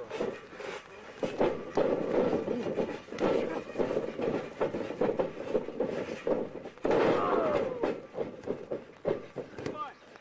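Indistinct voices talking and calling out, with no clear words, mixed with short scuffling knocks. The voices are loudest about seven seconds in.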